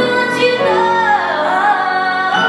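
A young boy singing solo into a microphone, holding long, high notes that bend in pitch.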